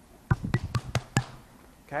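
A hand slapping a belly: about seven quick slaps in roughly a second.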